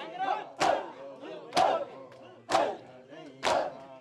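A crowd of mourners beating their chests with their hands in unison during Shia matam: four sharp, loud slaps, about one a second, with men's voices calling between the beats.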